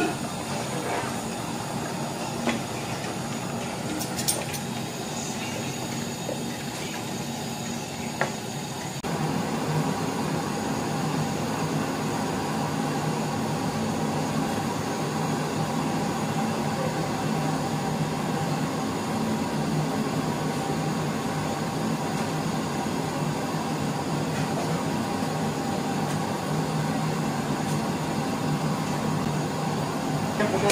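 Steady roar of a gas stove burner under a large aluminium pot of simmering meat curry, with a few sharp clinks of a metal ladle against the pot in the first part. The roar steps up louder about nine seconds in and holds steady from there.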